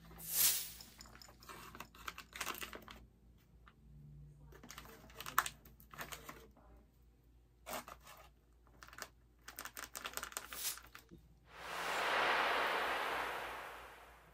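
Plastic crinkling, tapping and small clicks from gloved hands handling plastic mixing cups and pigment containers. Near the end a hiss swells and fades over about two seconds.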